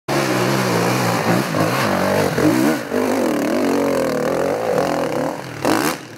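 Enduro motorcycle engine revving up and down as the bike rides the dirt trail, its pitch rising and falling with the throttle. A brief louder rush of noise comes just before the end.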